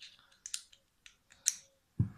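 A few small, sharp metallic clicks and ticks from handling a hand screwdriver and fitting its bit, the loudest about a second and a half in.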